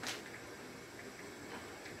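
Plastic hop packet being cut open with scissors: a short crisp rustle right at the start, then a few faint ticks of handling the bag over a low steady hiss.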